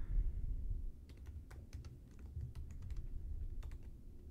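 Computer keyboard typing: a run of light keystrokes from about a second in, with a short pause before the last few. A low rumble underlies it, loudest at the very start.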